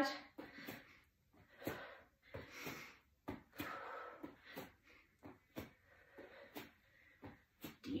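Faint breathing of a woman holding a plank with shoulder taps, drawn in and let out in soft swells, with light taps every half second or so as her hands pat her shoulders and come back down to the mat.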